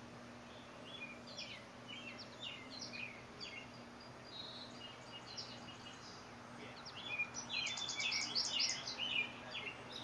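Birds chirping in short, quick calls, with a louder, denser run of chirps about seven seconds in that lasts some two seconds, over steady outdoor background noise and a faint low hum.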